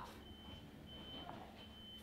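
Faint high-pitched electronic beeping over quiet room tone: three beeps of about half a second each, one steady pitch.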